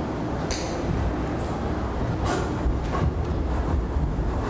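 A steady low rumble of room noise, with a few brief rustles of the book and ruler being handled.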